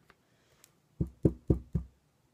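Four quick, dull taps on a hard surface, evenly spaced about four a second, from a makeup brush being tapped to knock off excess eyeshadow powder.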